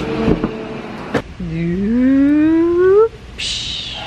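A sharp click, then a woman's voice in one long, rising, wordless call, like an excited drawn-out "heyyy" of greeting, followed near the end by a short high-pitched squeal.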